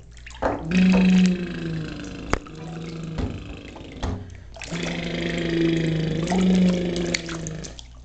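Bathwater splashing and sloshing as a baby moves his hands in a bathtub, with a few sharp clicks and a steady low hum that steps between two close pitches.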